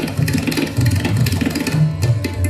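Tabla and sitar playing together in Hindustani classical music: rapid tabla strokes, with the bayan's deep bass notes shifting in pitch, over the plucked sitar.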